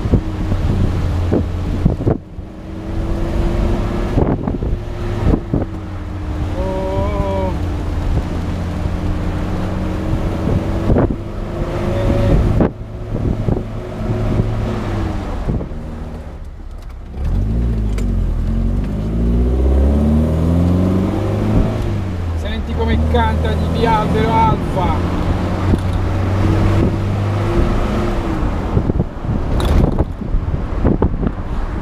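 The 1.6-litre twin-cam four-cylinder engine of a 1972 Alfa Romeo Spider Duetto under way, heard from the open cockpit with wind buffeting the microphone. About sixteen seconds in the engine drops away briefly, then pulls up again with its pitch rising steadily for several seconds.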